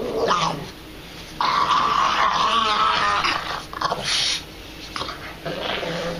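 Pug growling while tugging against a person pulling his toy penguin. There is one long growl starting about a second and a half in, followed by shorter ones.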